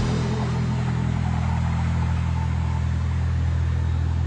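Steady low vehicle engine hum, an even drone of several deep tones with no change in speed or pitch.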